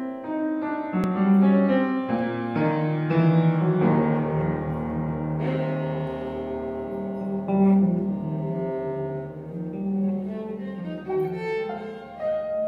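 Free-improvised music on bowed violas and untuned piano: overlapping held string notes over low sustained tones, with piano notes among them.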